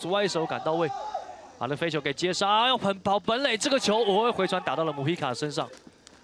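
Broadcast commentary: a man talking rapidly, his pitch swinging widely, with a brief pause about a second in.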